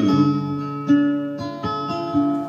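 Acoustic guitar accompaniment playing a short instrumental phrase between vocal lines. Notes ring on, with new ones plucked about a second in and several more near the end.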